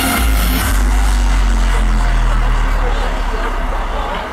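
Live electronic dance music through a festival sound system, heard from inside the crowd: a deep, steady bass tone holds for about two seconds under a wash of crowd noise.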